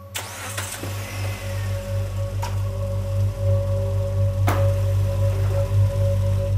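Background music swelling over a police patrol car's engine starting and running, the low rumble building steadily. A few sharp knocks come near the start, about two and a half seconds in, and about four and a half seconds in.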